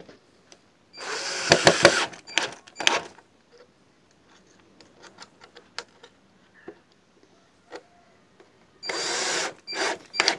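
Cordless drill driving screws through wooden slats into a pressed reed panel: one run of about a second near the start and another near the end, with scattered clicks and knocks between them.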